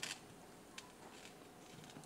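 Fingers picking and peeling the sticker seal off the neck of a glass bottle of Alfonso Light brandy. It makes a faint scratching with a short click at the start.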